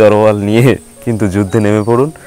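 A man speaking Bengali close to the microphone, with a faint steady high-pitched whine underneath.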